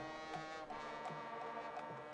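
Faint marching band music: sustained chords over a steady low beat.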